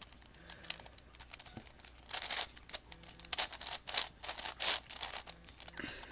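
Plastic layers of a V-Cube 7x7x7 puzzle cube being turned by hand: several short bursts of clicking, rattling clatter, one per turn or run of turns.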